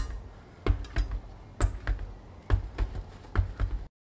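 Knobby tire on the Sur Ron's spoked rear wheel being bounced on a concrete floor, a string of thumps two or three a second, to spread fresh tubeless sealant around the inside of the tire and seal the bead. The thumping breaks off abruptly near the end.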